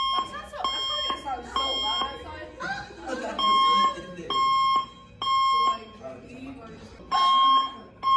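School fire alarm horn sounding the evacuation signal: loud, high beeps of about half a second each, in groups of about three with short pauses between groups, set off when a student allegedly pulled the fire alarm.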